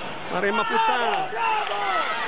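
Several men's voices shouting over one another, calling encouragement to a kickboxer in the ring.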